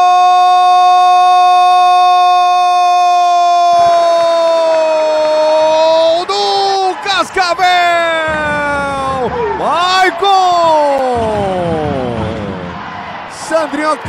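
A play-by-play commentator's drawn-out goal shout, 'Gol!', held on one high pitch for about six seconds, then breaking into sliding cries that end in a long falling glide. Crowd noise sits underneath from about four seconds in.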